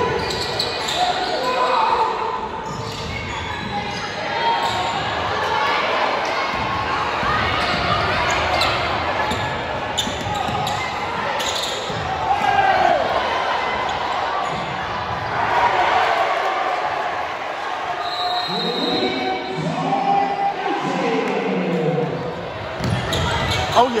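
A basketball dribbled and bouncing on a gym floor during a game, the thuds and shoe squeaks echoing in a large gym under the steady chatter of crowd voices.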